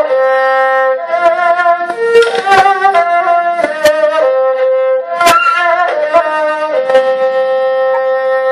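Huqin, a two-string Chinese bowed fiddle, playing a slow melody of held notes, with vibrato and pitch slides between some of them.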